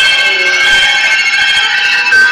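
Noise music: a loud, dense mass of several steady high tones held together, with a rougher layer beneath.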